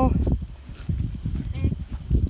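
A horse grazing close by, tearing and chewing grass in irregular short strokes.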